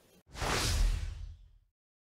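An edited-in whoosh sound effect marking a segment transition: a single noisy rush that starts about a quarter second in and fades out over about a second and a half.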